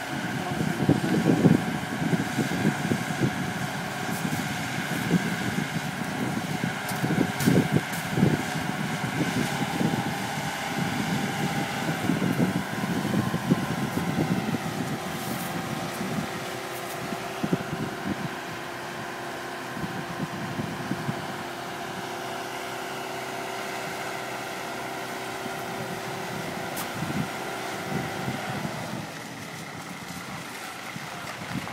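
Marine travel lift running as it hoists a sailboat out of the water in slings: a steady machine hum with higher steady tones joining about a third of the way in and cutting off just before the end. Wind buffets the microphone in gusts through the first half.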